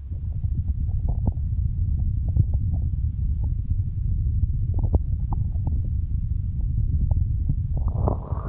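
Hands cupping and moving over the ears of a binaural microphone: a steady muffled low rumble, with small crackling pops and taps scattered through it.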